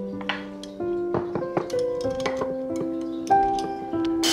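Gentle background music of held, slowly changing notes, with a few light taps and clicks over it.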